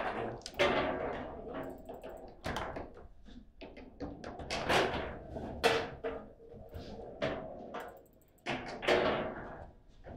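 Foosball table in play: an irregular run of sharp knocks and clacks as the ball is struck by the men on the rods and the rods slam against the table, each knock ringing briefly.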